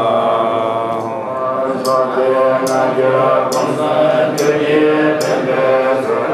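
Tibetan Buddhist monks chanting a liturgy together in a low, steady drone. From about two seconds in, a crisp high tick sounds roughly once a second.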